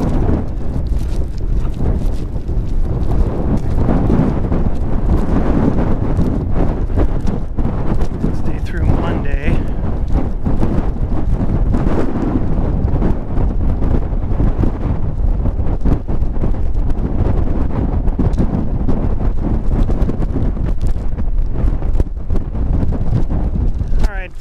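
Strong wind of about 30 miles an hour buffeting the microphone: a loud, steady low rumble that does not let up.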